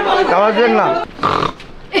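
A voice chanting in a sing-song rhythm for about a second, then a short rough, noisy vocal sound and a brief lull.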